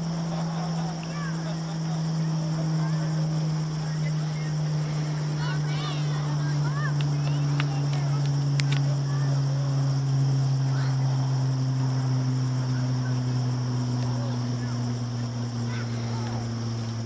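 Crickets chirping in a fast, steady high-pitched pulse, with a low steady hum underneath that slowly falls in pitch.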